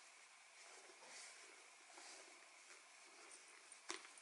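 Near silence with faint rustling of a silk scarf being twisted and tied around a quilted leather bag's handle, and one sharp click just before the end.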